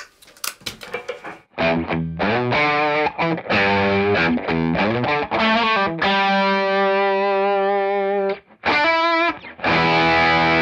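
Electric guitar played through a Keeley D&M Drive overdrive pedal at heavy gain: a distorted run of chords, then a long held chord, a brief stop, and a final chord that rings on near the end.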